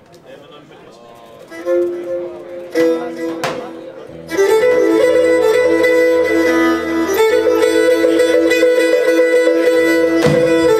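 Pontic lyra and guitar starting a tune. First come a few quiet scattered notes. About four seconds in, the lyra comes in loud and bowed, sounding two notes together with sustained lines, over the guitar, and keeps playing.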